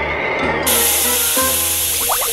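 A loud, steady steam hiss starting abruptly a little over half a second in, as the icy bathwater is heated into steam.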